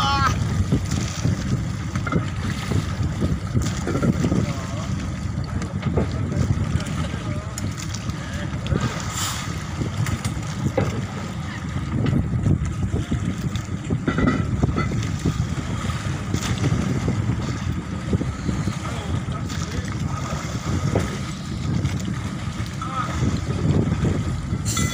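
Wind buffeting the microphone over the sea, a steady fluttering low rumble, with faint voices underneath.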